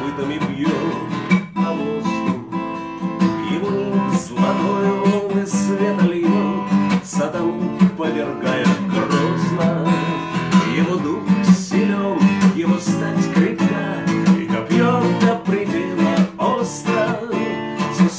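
Steel-string acoustic guitar strummed in chords, accompanying a man singing.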